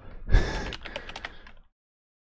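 Typing on a computer keyboard: a quick run of key clicks for about a second and a half, led by a low thump, then an abrupt cut to silence.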